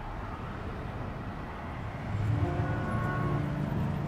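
City traffic ambience: a steady rumbling hum that grows slowly louder, joined about halfway through by held low tones.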